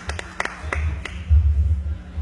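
A few scattered hand claps from the guests, heard as separate sharp claps rather than full applause. Low thumping rumbles run under them and are loudest a little past the middle.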